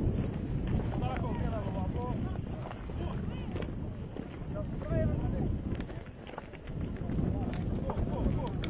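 Wind buffeting the microphone as a steady low rumble, with indistinct voices calling out now and then.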